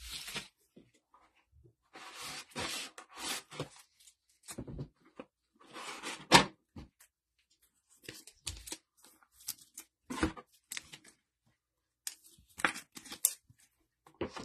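Trading cards handled by hands in nitrile gloves: irregular rustling, sliding and scraping of card stock and wrapper, with a sharp tap about six seconds in.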